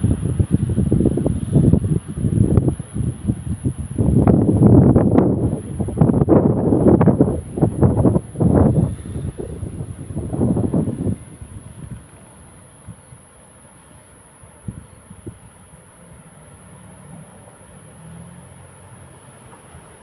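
Wind buffeting a phone's microphone in loud, uneven gusts for about the first eleven seconds, then easing to a quieter low rumble.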